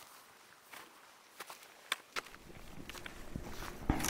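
A hiker's footsteps and trekking-pole tips crunching and tapping on frosty hill grass: faint, irregular crunches and clicks. A low background noise grows louder in the second half.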